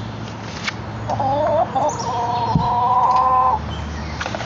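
A chicken gives one long, drawn-out call starting about a second in and lasting about two and a half seconds, wavering at first and then held steady, with short clucks before it.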